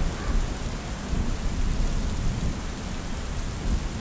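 Steady rain falling, an even hiss with a low, uneven rumble underneath.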